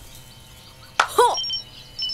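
Cartoon jungle background ambience with faint, short, high chirps. About a second in, a character makes a brief vocal sound that dips and rises in pitch.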